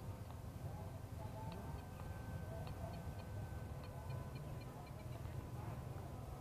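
Faint, steady whine of a small RC parkjet's electric motor and propeller (a Turnigy 2200KV brushless motor) flying high and far off, over a low rumble of wind on the microphone.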